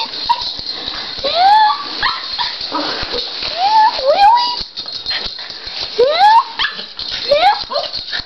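Small Schnorkie (schnauzer–Yorkshire terrier mix) dog whining and yelping in excitement at its owner's return: about four short high cries that rise in pitch, spaced a second or two apart.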